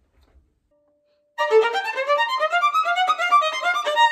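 Solo violin playing a fast passage of quick, short bowed notes at full tempo, starting about a second and a half in after near silence.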